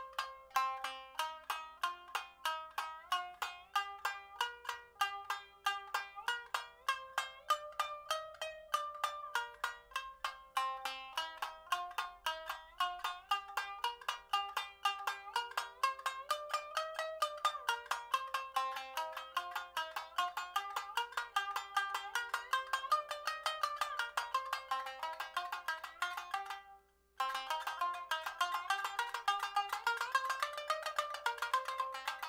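Tsugaru shamisen played with a bachi in rapid alternating down and up strokes: a fast, even stream of plucked notes in short repeating phrases that step up and down. There is one brief break about 27 seconds in.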